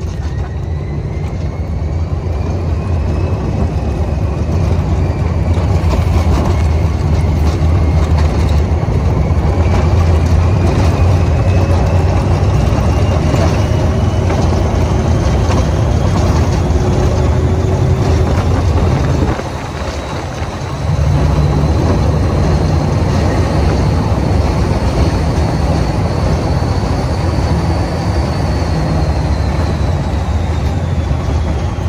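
Test Track ride vehicle running at high speed on the outdoor loop during the power test, with loud wind rush and heavy buffeting on the microphone. A faint high whine climbs slowly as the vehicle gathers speed, and the noise dips briefly about two-thirds of the way through.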